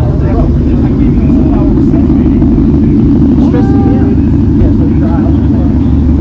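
A car engine idling close by, a steady loud rumble with rapid even pulsing, with people talking faintly in the background.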